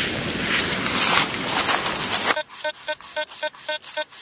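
A broad rushing noise, then, about two seconds in, a T2 VLF metal detector's speaker starts giving a rapid run of short, pitched beeps, about four or five a second, as its coil is swept over grass.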